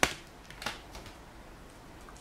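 A small cardboard box being handled and opened: a sharp click right at the start, then a couple of fainter taps.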